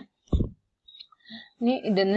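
A woman speaking, her speech pausing for about a second and a half, with a brief low sound early in the pause and a few faint clicks before she speaks again.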